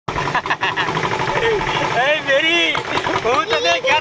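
People talking over the steady running of a vehicle's engine, with lively voices taking over about halfway through.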